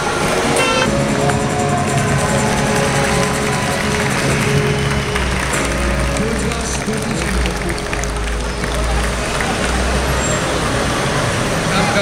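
Busy city street traffic with a street musician's amplified music mixed in, the music tones clearest in the first seconds. A heavy low engine rumble from a passing large vehicle swells in the middle and fades again.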